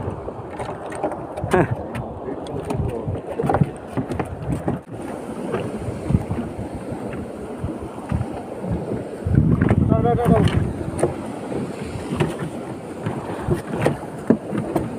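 Sea water slapping against a small fishing boat's hull, with wind on the microphone and many small knocks. A voice calls out about ten seconds in.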